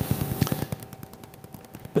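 A pause between spoken phrases, filled with faint, irregular clicks and crackles over a low steady hum.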